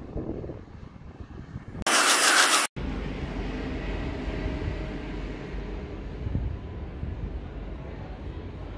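Container freight wagons rolling past, then a loud burst of hiss lasting about a second that ends in an abrupt cut. After the cut, a steady low rumble with wind noise as a VIRM double-deck electric train approaches from far off.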